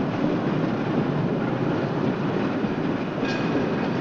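Cable car rolling along its street track, a steady noise of the car running on its rails.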